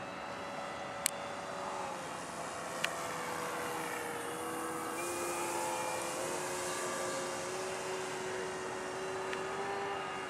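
Electric RC P-47 warbird in flight: its brushless motor and propeller make a steady whine that shifts up and down in pitch several times. Two sharp clicks come about one and three seconds in.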